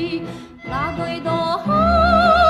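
A woman sings a Macedonian folk song with heavy vibrato over instrumental accompaniment. There is a short breath-pause about half a second in, then a new phrase with quick sliding ornaments that opens into a loud, long-held note near the end.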